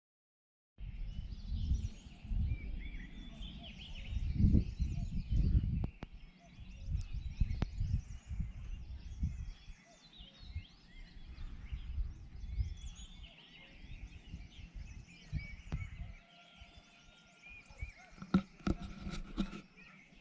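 Small birds chirping and singing in many short, quick calls, while wind buffets the microphone in irregular low gusts, strongest over the first half.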